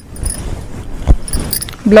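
Mercerized cotton saree cloth rustling as it is handled and unfolded, with bangles on the wrists lightly clinking and a single knock about a second in.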